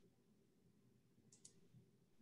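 Near silence: faint room tone, with two quiet clicks close together about one and a half seconds in.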